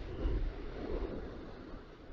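Wind on the microphone and sea washing onto a shingle beach, a soft rush with a low rumble, louder in the first second and then easing off.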